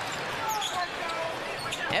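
A basketball being dribbled on a hardwood court over steady arena crowd murmur.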